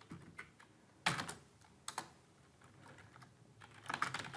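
A few scattered keystrokes on a computer keyboard, with pauses between them; the loudest come about a second in and as a pair just before two seconds.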